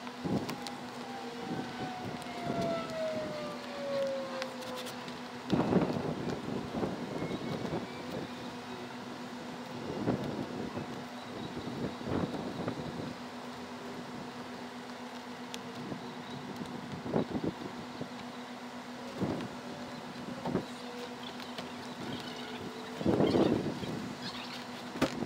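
Scattered scraping, crackling and knocks from asphalt shingles being cut with a utility knife and pried up off a roof deck, with boots shifting on the roof, over a steady low hum. A whine falls in pitch over the first five seconds, and the loudest burst of scraping comes near the end.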